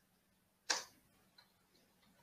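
A single sharp click about two-thirds of a second in, followed by a much fainter tick, over quiet room tone.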